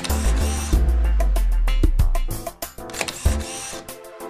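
Title-sequence theme music with a long deep bass note, overlaid with a rapid series of camera-shutter click effects.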